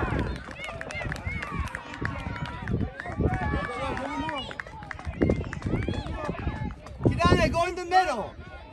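Many voices of children and adults calling out across a youth soccer field, none of it clear words, with a loud high-pitched shout near the end.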